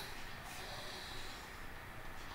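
A person's faint breath close to the microphone over a low steady hiss, in a pause between spoken sentences.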